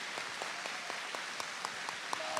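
Audience applauding, many hands clapping fairly softly and steadily.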